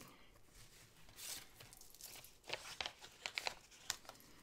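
Faint peeling and crinkling of a paper planner sticker being pulled off its backing sheet: a soft rustle about a second in, then a few short sharp crackles near the end.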